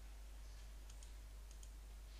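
A few faint computer-mouse clicks, some in quick pairs, over a low steady hiss and hum.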